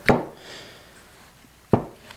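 Two light knocks, about a second and a half apart, as a worm gear's shaft is worked down into a Honda HRT216 lawnmower transmission case onto its bushing.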